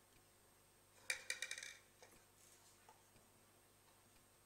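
Near-silent room tone, broken about a second in by a quick run of small sharp clicks lasting under a second.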